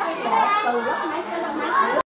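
Several people talking at once: lively, overlapping chatter from a group in a room.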